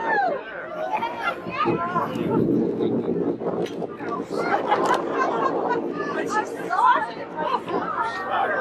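Boat passengers chattering and exclaiming over one another, several voices at once whose pitch rises and falls excitedly.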